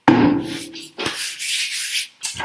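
Close scraping and rubbing handling noise right at the microphone, starting with a sudden knock, then a second longer stretch about a second in, as a drinking glass is set down.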